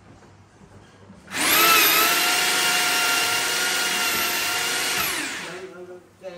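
Handheld electric drill driving a drum-type drain-cleaning cable, spinning the cable in a clogged kitchen sink drain. It starts suddenly about a second in, runs at a steady speed for about four seconds, then winds down near the end.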